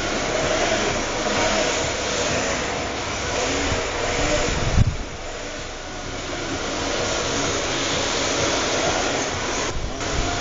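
Electric rear-wheel-drive RC drift cars running on an indoor track: a steady rush of motor whine and tyres sliding on the smooth floor, with the motor pitch wavering. A single thump about five seconds in.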